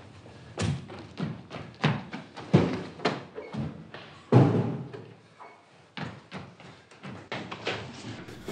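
A run of heavy thumps and knocks, irregularly spaced about one or two a second, the loudest about four seconds in.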